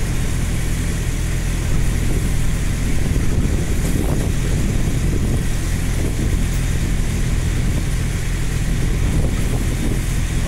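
An engine running steadily with a low, even drone, under a constant rush of storm wind and rain noise.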